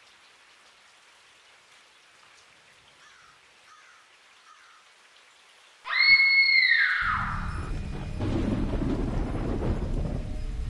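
Faint hiss, then about six seconds in a sudden loud high-pitched screech, held briefly and then falling in pitch, followed by a long low rumble.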